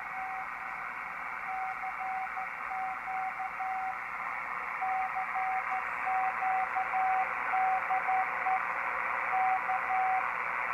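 A CQ call in Morse code (CW) coming from a Drake TR-4C transceiver's MS-4 speaker: one steady tone keyed in dots and dashes, with a couple of short pauses between groups, over the receiver's steady band hiss.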